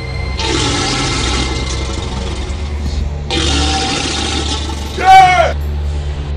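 A crocodile hissing twice, each hiss long and harsh, then a man's short yell falling in pitch about five seconds in, over a low steady music drone.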